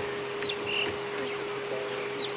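A wild bird's brief calls: a short falling chirp about half a second in, then a short whistled note, over a steady low hum.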